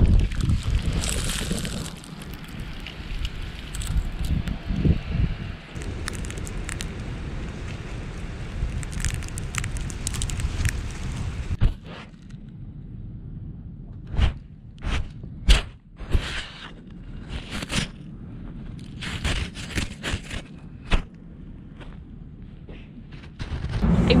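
Wind on the microphone with rustling and scraping of clothing and gear moving in the snow, then quieter, with a series of sharp, irregular clicks and knocks in the second half.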